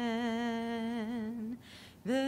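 A woman's unaccompanied solo voice holding one long sung note with a gentle vibrato, which ends about three quarters of the way through, followed by a short intake of breath.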